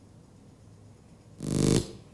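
A short, loud, buzzy electronic tone lasting about half a second, starting about a second and a half in and cutting off sharply, over a faint low hum.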